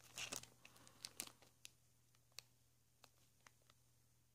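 Clear plastic bag crinkling faintly as it is handled with coin capsules inside: a short rustle at the start, then scattered sharp little clicks and crackles that thin out toward the end.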